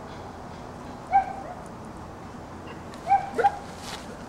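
Border collie giving short, high-pitched whining yips: one about a second in, then two in quick succession near the end.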